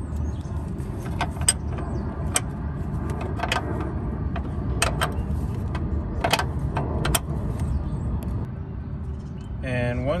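Scattered sharp metallic clicks and taps of a wrench working the flare nut of a car's hard brake line as it is unscrewed, over a steady low hum.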